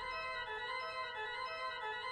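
Church organ playing the postlude: a quiet passage of sustained chords in the middle and upper range, changing every half second or so, with no bass notes under them.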